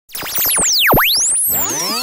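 Synthesized intro sound effect with electronic music: many sweeping pitch glides that dive steeply and swoop back up, one diving deepest just before a second in, starting abruptly at the very beginning.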